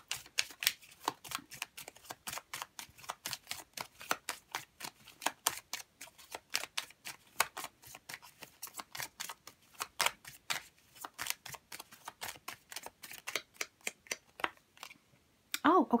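A deck of oracle cards being shuffled hand to hand: a quick, steady run of crisp card slaps and flicks, several a second, that stops near the end.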